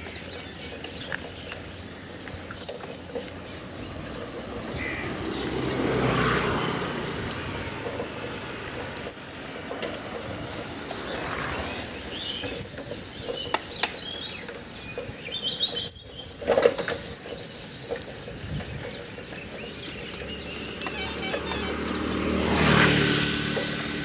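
Steady road and wind noise from riding along a village road, with birds chirping in short high notes again and again. Twice a louder rushing noise swells and fades, about six seconds in and near the end.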